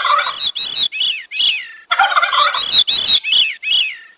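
Bird calls in two series of about two seconds each. Each series opens with a harsh note and then runs into four or five short notes that rise and fall.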